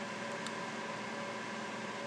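Steady room hiss with a faint even hum, typical of ventilation or equipment fans, and one faint tick about half a second in.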